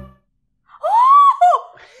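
Music cuts off, and after a brief silence a person gives a loud, high-pitched gasp of shock that rises and falls, then a second shorter cry.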